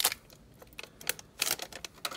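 Clear plastic packaging of a new 2.5-inch solid state drive crackling and clicking as it is handled and opened: a sharp click at the start, then a quick run of clicks about a second and a half in.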